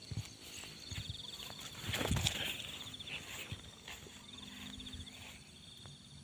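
An insect trilling high in short repeated bursts, over the outdoor background, with a louder rustle of steps through grass and plants about two seconds in.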